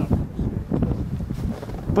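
Wind buffeting the microphone, an uneven low rumble, with faint voices in the background.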